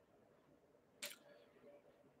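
Near silence: room tone with a faint steady hum and one brief soft noise about a second in.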